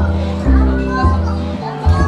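Background music with a bass line that changes note about every half second, with children's voices over it.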